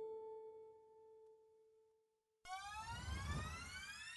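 A held electronic tone that fades away over about two seconds, a moment of near silence, then a rising synth sweep over a low rumble: a riser sound effect building into the show's music.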